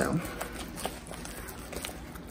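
Wooden spoon beating sticky choux paste in a stainless steel bowl while the eggs are worked in one at a time by hand, with a few faint knocks of the spoon against the bowl.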